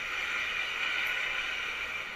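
Steady riding noise from a motorcycle moving slowly through city traffic: an even hiss with no distinct events.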